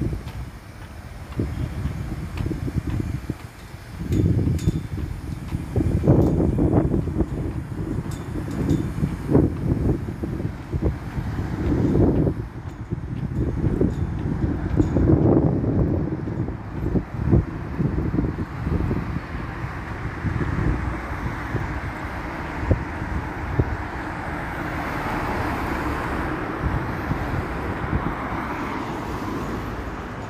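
Wind buffeting a phone's microphone in uneven gusts over street traffic, with the steady rush of passing vehicles growing louder in the last third.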